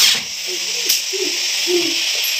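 Cordless drill-driver whining down to a stop right at the start, a screw driven into a cupboard door latch plate. After it comes a steady hiss with a single click about a second in.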